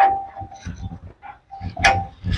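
Steel fittings of a tractor trolley knocked together while being handled: a metallic clank that rings with a clear tone and fades, then a second ringing clank near the end.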